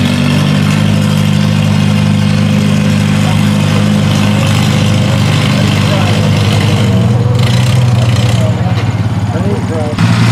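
Farmall M tractor's four-cylinder engine working hard under the load of a pulling sled. About two-thirds of the way through, its note drops lower as the sled drags the tractor to a stop.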